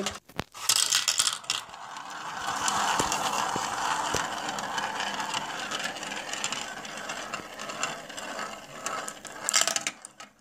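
Marbles rolling round and round a plastic funnel dish: a steady rolling rattle that slowly dies away. Sharp clacks come in the first second or so and again near the end, with a couple of single clicks in between.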